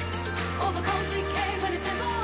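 Live pop song played by a band: electric guitar, bass and drums in a steady beat, with a sung vocal line over them. The bass note changes about a second in.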